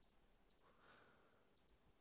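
Near silence, with a couple of faint computer mouse clicks.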